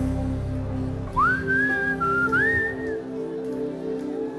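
Electronic keyboard holding soft sustained chords. About a second in, the deep low notes drop away and a high, pure, whistle-like melody enters, scooping up into its notes and sliding between them for a phrase of about two seconds.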